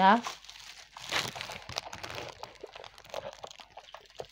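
Irregular crinkling and rustling from hands handling something on the table, continuing for about three seconds after a brief word at the start.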